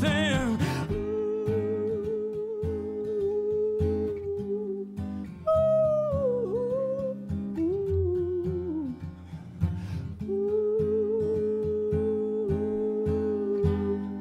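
Live music: strummed acoustic guitar under a long, wavering wordless vocal line of held notes, which jumps higher and slides down about six seconds in, then returns to its held note.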